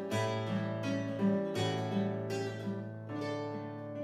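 Nylon-string classical guitar played solo, picking arpeggiated chord notes over a sustained bass note. About three seconds in, a new chord is struck and left to ring, slowly fading.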